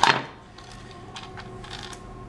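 A spoken word trailing off at the start, then a few faint, light clicks of fingers handling the plastic lever of an AM3+ CPU socket, over a faint steady hum.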